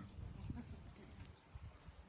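Faint background noise: a low rumble with soft, irregular small knocks.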